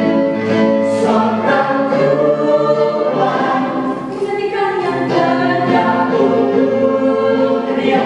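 Mixed men's and women's vocal group singing a pop song in harmony, several voice parts held and moving together in sustained chords.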